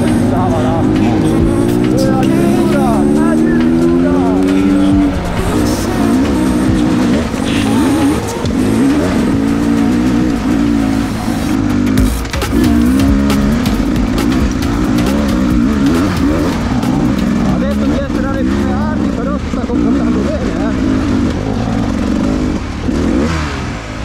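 Enduro dirt bike engine pulling uphill under throttle. Its pitch rises steadily for about the first five seconds, then rises and falls with the throttle over rough ground, with scattered knocks and rattles.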